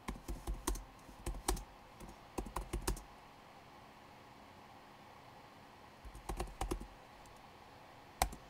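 Typing on a computer keyboard: a quick run of keystrokes for about three seconds, a pause, then a shorter run about six seconds in.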